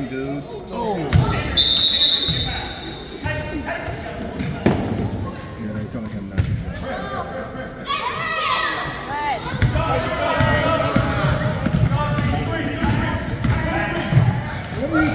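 A basketball bouncing on a hardwood gym floor, the sharp bounces echoing in a large hall, with voices shouting. A whistle blows once, about a second long, roughly two seconds in.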